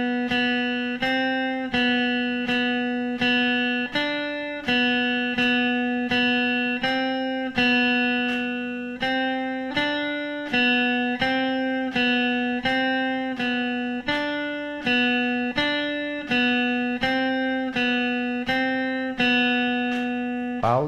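Electric guitar picked one note at a time with a clean tone, playing a simple melody on the B string using only the notes B, C and D in a steady even pulse of about one and a half notes a second.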